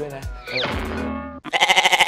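A bleating sound effect, a short tremulous call near the end that is the loudest sound, over steady background music. A falling whistle-like glide comes about half a second in.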